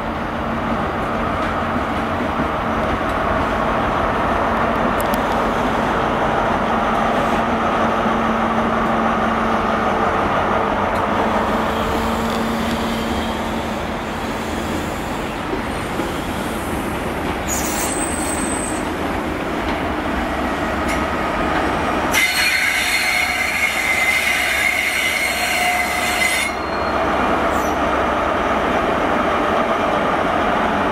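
A GWR Class 43 high-speed train passing slowly: the diesel power car runs with a steady hum over the rumble of coaches on the rails. In the second half a high-pitched wheel squeal sounds for about four seconds, then stops suddenly.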